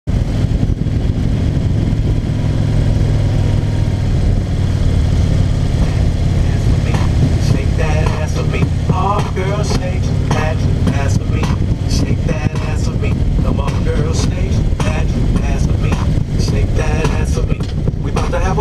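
Motorcycle engine and wind rumble at road speed. From about seven seconds in, a pop song with a singing voice and beat plays over it.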